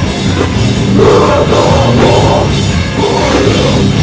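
Live metalcore band playing loud: distorted electric guitars, bass guitar and a pounding drum kit.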